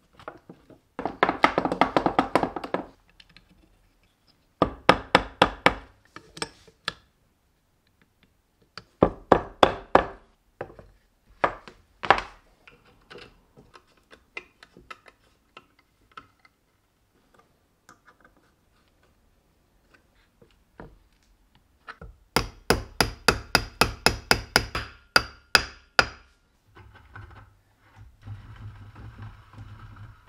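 Runs of rapid hammer taps on wooden press parts, each run lasting one to two seconds, with the longest run near the end at about four taps a second.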